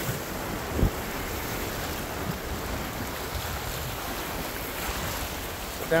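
Surf washing against the boulders of a rock jetty, a steady rushing noise, with wind on the microphone. There is a single brief thump a little under a second in.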